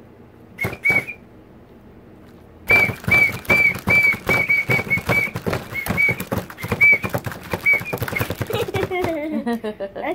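A light-up plastic toy whistle blown in short high-pitched toots on one steady note. Two quick toots come about half a second in, then a rapid run of about a dozen toots for about five seconds.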